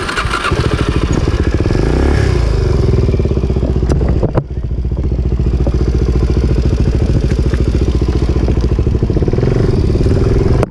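Suzuki off-road motorcycle engine running at low revs with a pulsing exhaust note. It rises in pitch about two seconds in, dips briefly once a little past four seconds, then runs on steadily.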